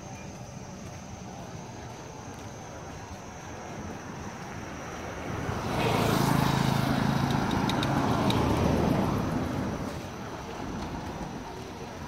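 A motorcycle engine running close by: it swells to a loud peak about halfway through, holds for about four seconds, then fades back into steady street background noise.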